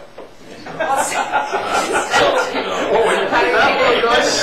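A group of people laughing and chuckling together with overlapping chatter, breaking out loudly about a second in.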